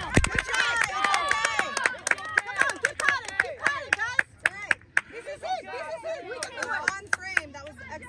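Several voices talking and calling out over one another, with scattered short sharp claps throughout.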